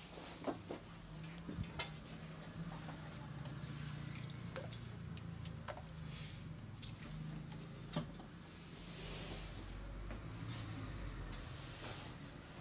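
Quiet handling sounds as a barber works with a spray bottle and cotton pad: a few sharp clicks and taps, and two short soft hisses, one about six seconds in and a longer one about nine seconds in, over a low steady hum.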